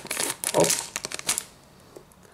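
Thin clear plastic bag crinkling as it is handled and slit with a craft scalpel, the rustle stopping about a second and a half in.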